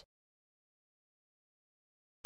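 Near silence: a fully silent pause.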